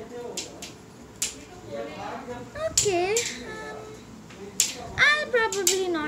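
A voice speaking indistinctly in two short stretches, with a few sharp clicks as a paper strip is handled.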